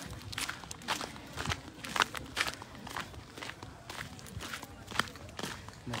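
Footsteps at a steady walking pace, about two a second, picked up close by a handheld phone, with faint voices in the background.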